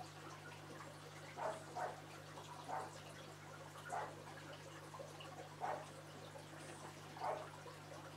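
Faint, steady low hum with about six soft, irregular drips of water, typical of the tanks and filters in an aquarium room.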